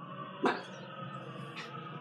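A small terrier gives one short bark about half a second in, barking at a dog in a video. Behind it runs the steady, muffled sound of that video playing through the computer speakers.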